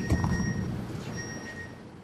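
Quiet room background: a low rumble and hiss that fade away, with two faint, thin high-pitched tones each lasting under a second.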